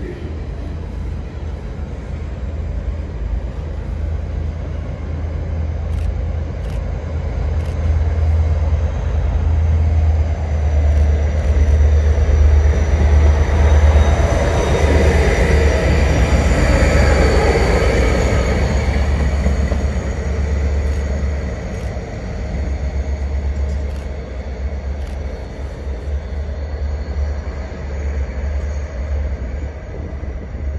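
A pair of Direct Rail Services Class 57 diesel locomotives running coupled past at close range, their EMD two-stroke V12 engines giving a deep steady drone. The drone builds as they approach, is loudest about halfway through with wheel and rail noise on top, then eases as they draw away.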